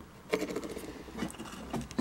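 Faint scratchy handling sounds: rustling with scattered small clicks, starting a moment in, as the camera is moved by hand.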